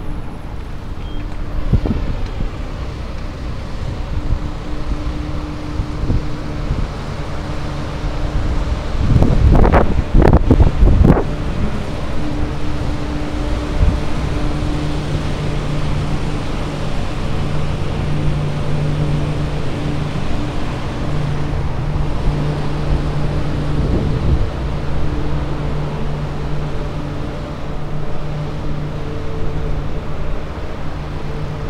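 Street traffic and wind on the microphone of a bicycle-mounted camera while riding, with a quick cluster of loud knocks about nine to eleven seconds in. A steady low hum runs through the second half.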